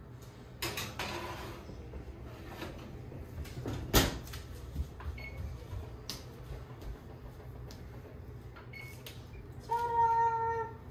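Metal baking tray scraping onto a GE electric oven's wire rack, then the oven door shutting with a single sharp knock about four seconds in. A few light clicks and two short beeps follow from the oven's control panel being pressed.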